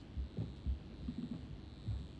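A few dull, low thumps, about three, over room tone, with faint low voices in the background.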